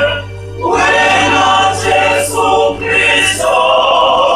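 Church choir of many voices singing a Zulu hymn, the voices breaking off briefly just after the start before the next phrase begins.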